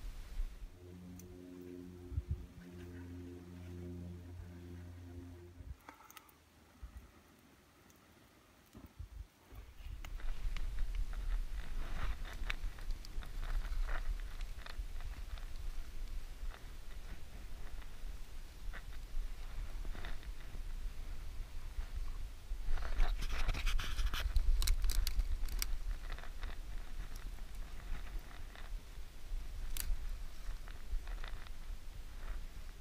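A small campfire being built from a char-cloth tinder bundle: kindling crackling and snapping as it catches, with sticks being handled. The crackling is busiest about two-thirds of the way through. A low steady hum is heard for the first few seconds.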